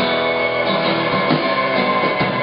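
Alt-country band playing an instrumental passage live: strummed acoustic guitar, electric guitar, electric bass and bowed violin over a drum kit keeping a steady beat.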